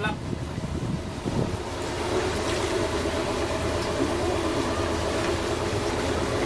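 Duffy electric boat under way: a steady rush of wind and water, with a steady low hum joining in about a second and a half in.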